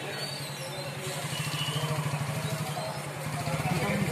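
A vehicle engine running steadily, a low pulsing drone that grows louder from about a second in, with voices in the background.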